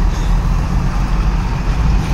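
Heavy goods truck's diesel engine running close by as the truck rolls slowly past, a steady low rumble.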